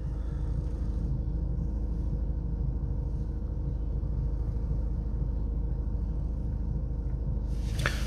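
VW Passat CC's 2.0 TDI (CBB) diesel engine idling steadily, heard from inside the cabin, just after being started during a DPF adaptation routine following a replacement filter.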